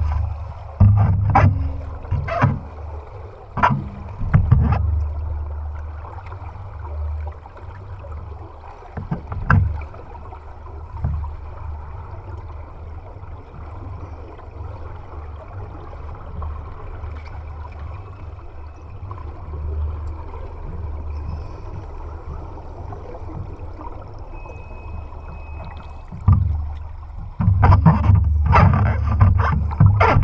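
Water noise heard through an underwater camera rig pushed along by swimmers: a low rumble of water rushing past the housing. There are knocks and louder sloshing bursts in the first few seconds and again near the end, when the rig is just under the surface, and a quieter steady rush in between.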